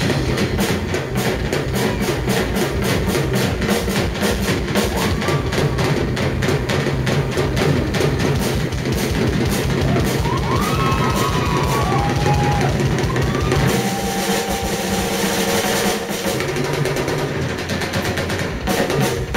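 Live drum solo on a TAMA rock drum kit: fast, dense strokes on the drums and cymbals with bass drum underneath. A few short whistle-like rising and falling tones sound over it about ten seconds in.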